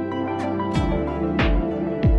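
Background music: sustained synth-like tones with a deep drum beat about every 0.6 s, coming in about a second in.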